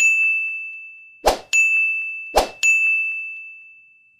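Subscribe-button animation sound effects: three identical bright dings about a second apart, each ringing and fading away. The second and third each come right after a short swish.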